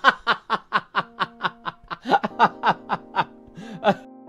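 A long, rhythmic burst of laughter, 'ha-ha-ha' at about four or five beats a second with a short break about halfway, over held music chords, as a sound effect on a title card.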